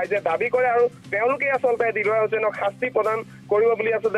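A high-pitched voice talking in quick phrases over a steady low background music bed.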